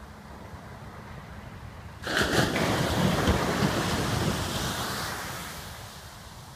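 Ocean surf washing on a sandy shore: a low steady hiss, then a loud rush of breaking surf about two seconds in that slowly dies away.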